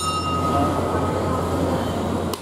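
Steady whirring hum of an evaporative air cooler's fan filling the room. A single high ringing tone dies away over the first second and a half.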